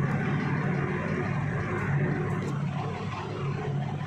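Steady background hum and noise with no speech, holding level throughout.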